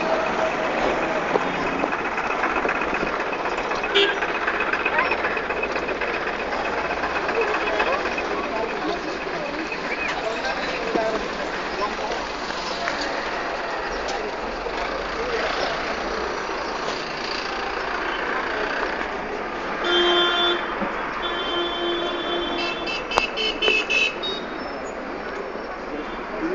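Busy street traffic runs steadily underneath indistinct voices. Vehicle horns sound near the end: a couple of longer, lower honks, then a quick run of short, higher beeps.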